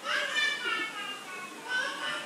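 A high-pitched voice: a short call whose pitch bends and falls in the first half-second, then a brief fainter sound near the end.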